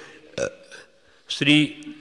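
A man's narrating voice: a short throaty vocal sound about half a second in, a brief pause, then one spoken word.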